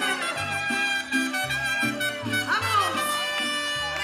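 Live mariachi band playing a lively number, with trumpets over strummed guitars and a moving bass line.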